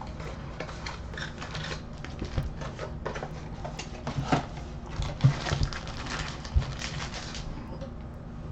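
Trading-card foil packs and a cardboard box being handled: rustling and crinkling with many light clicks and taps as the packs are pulled out of the box and set down on the table, and a few soft thumps in the second half.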